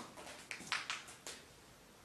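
A few soft rustles and short clicks from a person moving about amid debris, fading to quiet room tone in the second half.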